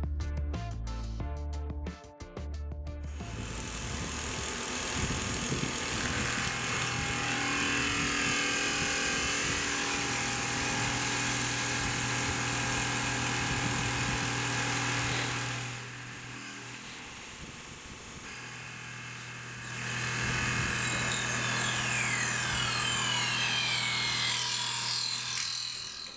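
Guitar music for the first few seconds, then a Tormach 1100M CNC mill cutting an aluminum plate: the spindle runs with a steady hum under a loud hiss of cutting. The cutting sound drops away about 16 seconds in and comes back about 4 seconds later.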